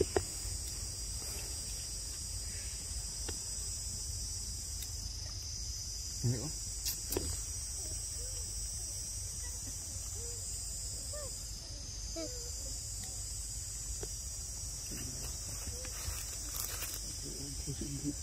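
Steady high-pitched drone of insects in the forest, with a few faint short squeaky calls in the middle and two sharp clicks about a second apart.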